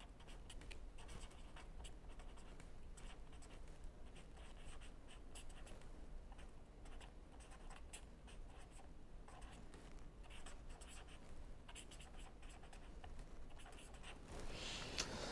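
Pen writing on paper: faint, quick scratching strokes as a line of handwriting is written out, over a low steady hum.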